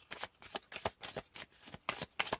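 A deck of tarot cards shuffled by hand, the cards passed from one hand to the other in quick, crisp strokes, about six a second.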